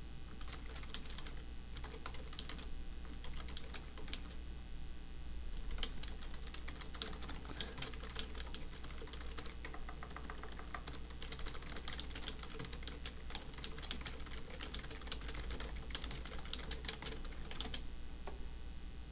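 Typing on a computer keyboard: quick runs of key clicks broken by short pauses, over a steady low hum.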